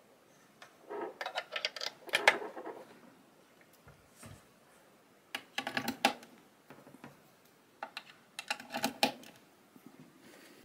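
Clicks and rattles of quarter-inch jack plugs and their cables being handled and pushed into audio sockets, in three short bursts.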